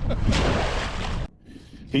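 A wire crab trap splashing into the water as it is dropped over the side of a boat: a noisy rush of about a second that cuts off suddenly. A man's voice starts near the end.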